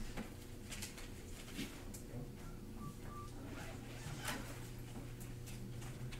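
Classroom room noise: a steady electrical hum with scattered rustles and clicks and faint murmuring voices.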